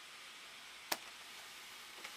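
Faint steady hiss with a single sharp click about a second in, as a blister-carded plastic action figure is handled and set down.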